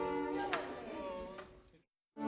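Orchestral film-score music with held chords, flutes among the players, fading out to silence near the end.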